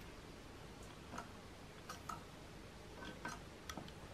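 Faint, light metallic clicks and scrapes of a fine pointed tool picking at the screw holes and feed-dog area of a Singer 66 sewing machine: about six small ticks at irregular intervals.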